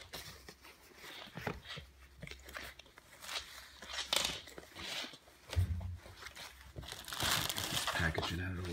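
Rustling and crinkling of a canvas hoodie as it is handled and unfolded, in irregular soft scrapes, with a louder stretch of rustling near the end.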